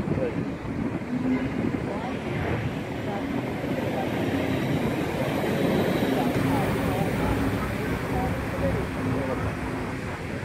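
Steady outdoor rumble of an R32 subway train moving slowly through a rail yard in the distance, blended with city background noise.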